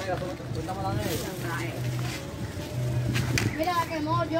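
Indistinct voices of several people talking and calling, with a low hum that comes and goes underneath.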